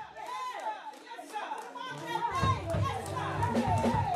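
Overlapping voices calling out in worship over church keyboard music. The keyboard's low chords drop out for about the first two seconds and come back in.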